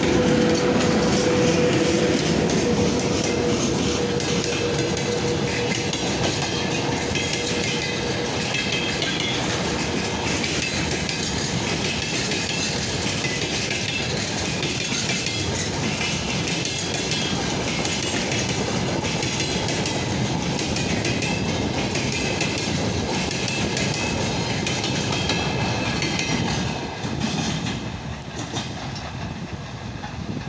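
Freight train of a VL80k electric locomotive and loaded flatcars passing close by. The locomotive's steady hum fades over the first several seconds, then the wagons' wheels clickety-clack over the rail joints. The sound drops away near the end as the last cars pass.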